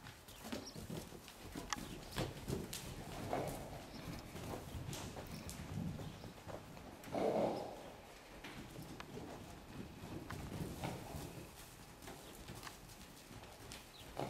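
Hoofbeats of a mare and her young foal moving loose over soft dirt arena footing: a run of irregular dull thuds. There is a brief louder burst about halfway through.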